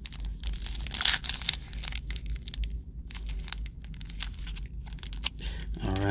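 A foil Donruss Optic trading-card pack, a tamper-resistant wrapper, being torn open and crinkled by hand: a busy run of crackles and rips, loudest about a second in.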